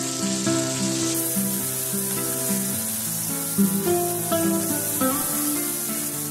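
Vegetables and chopped tomatoes sizzling as they fry in oil in a pan, the sizzle getting louder about a second in, under instrumental background music with a repeating melody.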